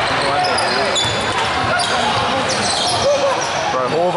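Basketball game in an echoing gymnasium: spectators chattering, sneakers giving short high squeaks on the court floor, and the ball bouncing.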